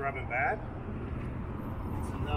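Steady low vehicle rumble, with a short snatch of voices in the first half-second.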